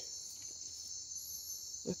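A steady, high-pitched chorus of night insects such as crickets, with a fainter, higher shrill that comes and goes.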